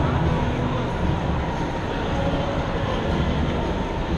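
City street ambience: a steady low rumble of traffic and crowd noise with no distinct events.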